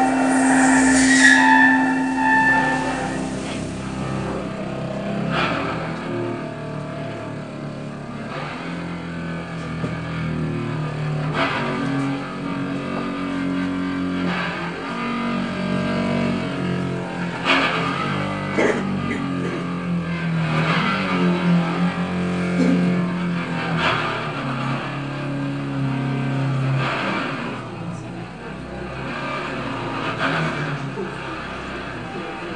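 A string stretched from a wall-mounted anchor, played with a bow, with the room's wall serving as the instrument's body. It gives low sustained drones that shift pitch every few seconds, broken by short scraping clicks.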